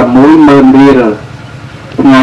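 A Buddhist monk's voice reciting a Dharma sermon in a sing-song chant into microphones. He holds one wavering note for about a second, then pauses briefly.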